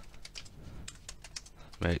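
Typing on a computer keyboard: a run of separate keystrokes.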